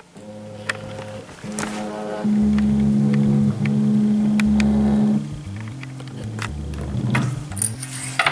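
TIKO delta 3D printer's stepper motors running during its auto-leveling routine, moving the arms and print head down to probe the bed. They hum in steady tones that jump from one pitch to another with each move, loudest from about two to five seconds in.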